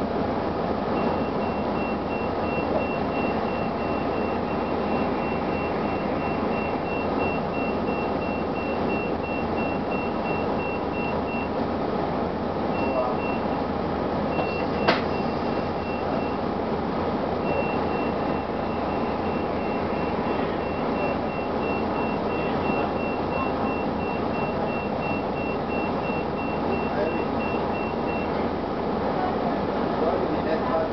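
Interior of a 1999 Gillig Phantom transit bus with its Detroit Diesel Series 50 diesel engine running with a steady drone, while a high electronic warning beep repeats about three times a second, pausing briefly near the middle. A single sharp click sounds about halfway through.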